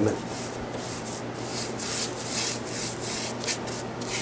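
Bristle paintbrush swishing back and forth across a wooden plywood top in quick repeated strokes, a few each second, brushing on wood stain.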